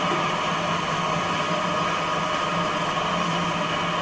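Stepper-motor-driven rotor of a mechanical television with four spinning LED strips, running at steady speed: an even whirring hum with several held tones.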